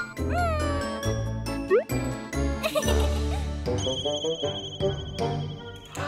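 Playful children's background music with a bouncing bass line and jingly notes. A falling and then a rising whistle-like glide come in the first two seconds, and a high warbling tone is held through the second half.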